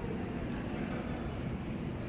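Steady low background noise of a large hall with an audience, room tone between speech with no single sound standing out.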